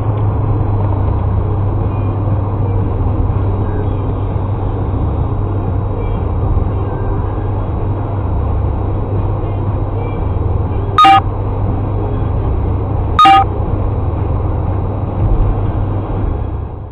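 Steady rumble of road and engine noise inside a moving car, picked up by a dashcam. Two short, loud beeps come about two seconds apart in the latter part.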